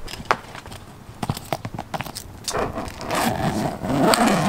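A soft-sided cooler's nylon webbing strap and hardware being handled: a few sharp clicks and knocks, then a longer scraping rustle over the last second and a half.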